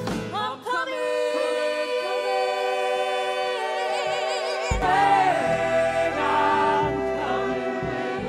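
Musical-theatre song with long sustained sung notes in vibrato over held ensemble voices, and almost no bass at first. About halfway through, the band's low end comes back in under the voices.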